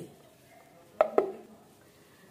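Two quick, sharp clinks of kitchenware about a second in, a fifth of a second apart, each with a short ring. Otherwise a quiet room.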